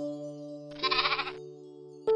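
A single recorded sheep bleat, about two-thirds of a second long and quavering, comes just under a second in. It sits over a held musical chord that opens a children's song.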